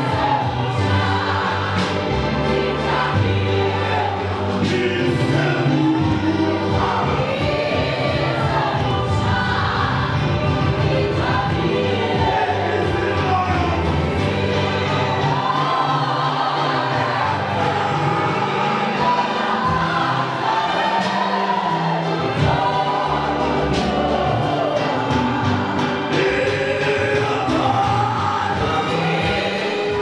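Church congregation singing a gospel song together in chorus, loud and continuous, with sustained low accompaniment notes underneath.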